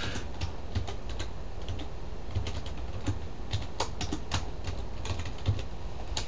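Typing on a computer keyboard: irregular key clicks, a few a second.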